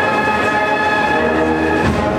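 Brass band holding a long, steady chord, with lower notes coming in about a second and a half in.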